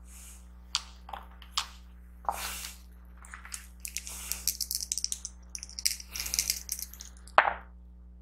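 Dice, a d8 and a d4, rolled into a hexagonal dice tray: a few separate clicks, then a quick run of rattling clicks as they tumble, and one sharp knock near the end.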